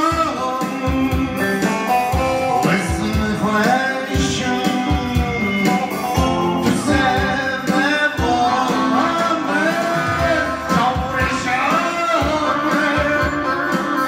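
A man singing a song into a microphone over instrumental backing, with long wavering held notes in the vocal line.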